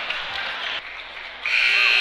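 Crowd noise in a gymnasium, then about a second and a half in the scoreboard buzzer starts, a steady high tone that ends the game.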